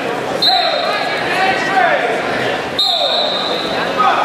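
Indistinct voices and calls echoing through a large gymnasium, with a short high-pitched tone twice, about half a second in and near three seconds, and a sharp knock near three seconds.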